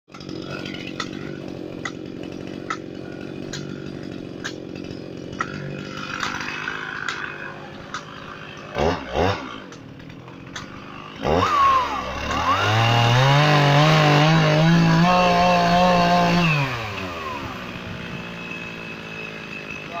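Gasoline chainsaw running at idle, blipped twice near the middle, then revved up to high speed and held there for about four seconds before dropping back to idle.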